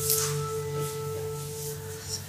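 Soft meditative background music: one steady held ringing tone, like a singing bowl, over a low sustained drone.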